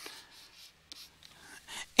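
Faint, short scratching strokes and light taps of a stylus drawing on a tablet, several small strokes in a row.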